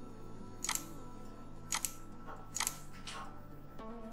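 Computer mouse clicking four times, short sharp clicks about a second apart, over a faint steady hum.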